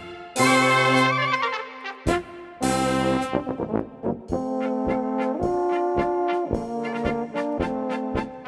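A brass band playing a Bohemian-Moravian polka: two loud held full-band chords with a falling run, then from about four seconds in a steady oom-pah beat with bass and drum, a little under two beats a second.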